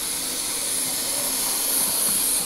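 A Z scale model railcar running along the track under power, its tiny motor and wheels giving a steady high-pitched whir that grows slightly louder.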